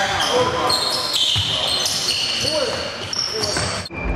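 Basketball game on a hardwood gym court: sneakers squeaking in short high chirps and a basketball bouncing, mixed with players' shouts. It all cuts off suddenly near the end.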